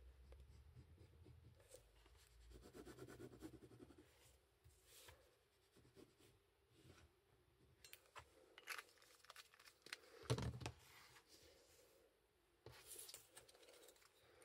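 Near silence with faint rustling and small clicks of card and a plastic glue bottle being handled on a cutting mat. There is one dull knock about ten seconds in and a brief paper rustle near the end.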